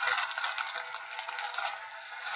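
Faint rustling and crinkling of condom packaging and a paper instruction leaflet being handled, with many small irregular ticks.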